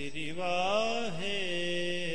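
A man's voice singing a long, wavering note of Sikh kirtan with a slow glide in pitch, over steady held accompaniment notes.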